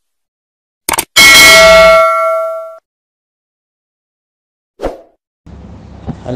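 Sound effects of a subscribe-button animation: a short mouse click about a second in, then a notification-bell ding that rings and fades out over about a second and a half. A brief soft thump follows near the end, then a low steady hum.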